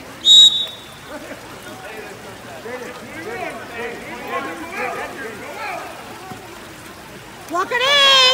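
One short, loud referee's whistle blast about half a second in, then spectators' voices calling out over the splashing of water polo players swimming in the pool. Loud shouting starts near the end.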